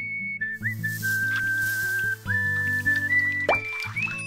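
Theme music with a whistled melody of held notes that slide up into pitch, over a steady low accompaniment. A quick rising sweep comes near the end.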